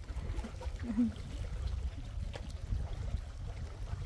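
Wind buffeting the microphone over open lake water: an uneven low rumble, with a faint voice about a second in.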